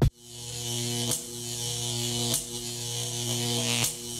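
Electronic glitch buzz in a logo intro: a low, steady synthetic drone with hiss on top that swells in at the start and drops out briefly three times, like a faulty electrical signal.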